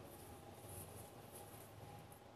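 Very faint rustling of basil stems and leaves being handled during trimming with small scissors, in a few soft scratchy patches over a low steady hum.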